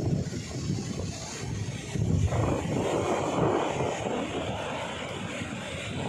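Wind rumbling on the microphone over the rush of rough, storm-driven sea surf breaking on a beach. The noise grows fuller about two seconds in.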